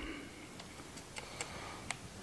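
A few faint plastic clicks from a smartphone and a clip-on FLIR One Pro LT thermal camera being handled and fitted together, the last one near the end the sharpest, over quiet room tone.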